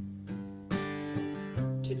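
Acoustic guitar strumming a simple song intro at a steady tempo, about two strums a second, moving to a new chord about one and a half seconds in.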